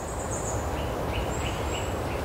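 Woodland birds calling over a steady low rumble: a high thin trill in the first half-second, then a run of short notes repeating about three times a second.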